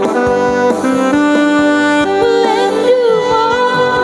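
Electronic keyboard playing an instrumental melody between sung lines, in a saxophone-like lead voice, over its accompaniment.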